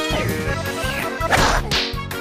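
Cartoon soundtrack: playful music with a short whooshing sound effect about a second and a half in.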